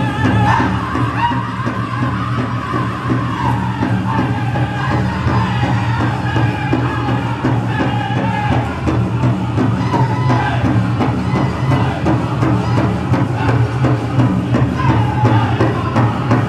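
Powwow drum group singing a jingle dress dance song: high, wavering voices in unison over a steady beat on a shared big drum.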